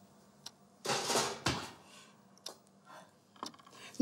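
A metal baking tray being put into a kitchen oven: a short scrape about a second in as it slides onto the rack, with a few light clicks and clunks of the oven door around it.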